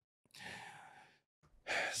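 A man sighs close to the microphone: one breathy exhale of about a second that fades away. His speech starts again near the end.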